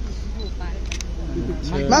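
A camera shutter clicks once, about a second in, over a steady low street rumble and faint voices. A man starts calling "ma'am" near the end.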